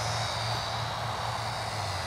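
The electric motor and propeller of a Flyzone Nieuport 17 micro RC airplane, heard as a thin steady whine as it is flown in to land. A low steady hum runs underneath.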